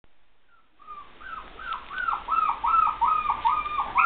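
Poodle puppy whining in the background: a rapid run of short, high-pitched cries, about three or four a second, starting about a second in and growing louder.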